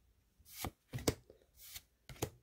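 Pokémon trading cards being slid one at a time off the front of a handheld stack: about three short, soft swishes of card stock rubbing against card stock.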